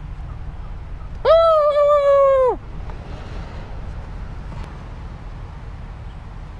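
A person's voice giving one long held call of just over a second, about a second in, starting and stopping abruptly with a slight drop in pitch at the end.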